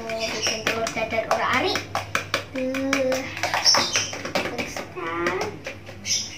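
A child talking, with a steel fork clicking quickly and unevenly against a plastic bowl as eggs are beaten.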